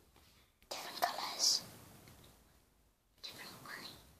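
A person whispering in two short bursts, one about a second in and one near the end.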